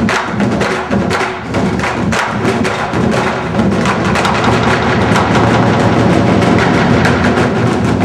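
Korean barrel drums (buk) on stands struck with sticks in a fast, dense rhythm, with other instruments sustaining tones underneath.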